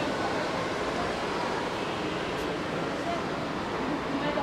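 Shopping-mall hall ambience: a steady wash of noise with indistinct voices in the background.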